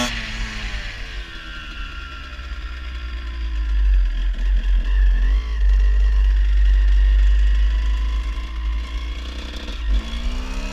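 Suzuki RM125 two-stroke single-cylinder dirt bike engine heard from the rider's helmet: the revs fall away as the throttle is closed, the engine runs low through a slow turn under a heavy low rumble of wind on the microphone, then the revs start to climb again right at the end.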